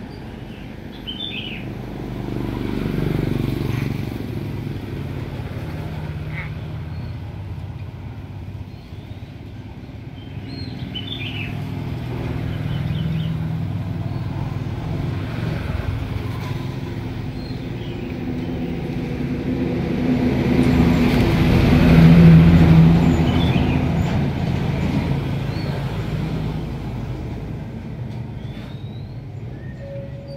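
Low rumble of passing motor vehicles, swelling to its loudest about two-thirds of the way through, with a few brief high chirps from a caged common hill myna scattered across it.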